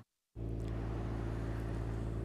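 A moment of dead silence at an edit, then a steady low motor hum with a few fixed low tones and faint hiss, even in level throughout.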